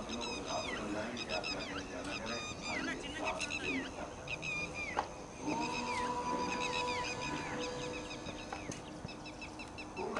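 Birds in the surrounding trees chirping over and over in short falling whistles, with a murmur of voices underneath. A sharp knock comes about five seconds in, followed by a steady held tone lasting about three seconds.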